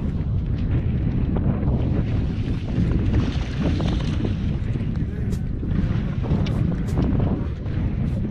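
Heavy wind buffeting the microphone with a constant low rumble. About three to four seconds in, water splashes as a hooked bass thrashes at the surface beside the boat.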